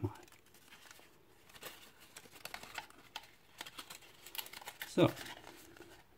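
Faint, scattered crinkling and rustling of folded paper as a paper fortune teller's last corner is pushed out and flipped up by hand.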